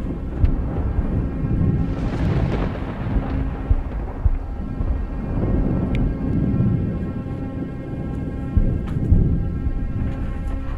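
Low rolling thunder rumbling in slow waves under a dark, sustained suspense-music drone.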